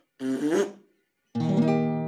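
A brief burst of a man's voice, then, about a second and a half in, an acoustic guitar chord is struck and left ringing.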